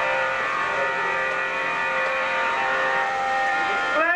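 Harmonium playing, holding steady sustained notes and chords between sung lines. Near the end a singing voice slides up into a held note.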